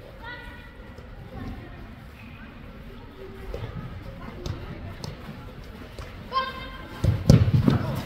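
Youth soccer game in a large indoor hall: a couple of short, high shouts from players echo around the hall, with a few sharp thuds of the ball being kicked. Louder low thumps come close by near the end.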